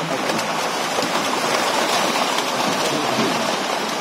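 A dense shoal of large fish thrashing and splashing at the river's surface: a steady, loud rush of churning water.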